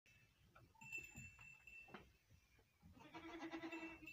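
One faint, drawn-out sheep bleat near the end, after a couple of seconds of very quiet scattered sounds.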